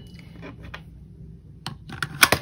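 Pennies being pushed through the slide slot of a digital coin-counting jar lid, making three sharp clicks: one about a third of the way in, then two close together near the end.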